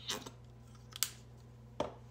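A plastic squeeze bottle of craft paint being handled over a paper plate: a short crackly squirt just after the start, then two sharp clicks, one about a second in and one near the end.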